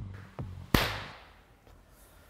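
A sharp hit with a long fading tail about three quarters of a second in, preceded by a faint click: the closing accent of an electronic intro music sting.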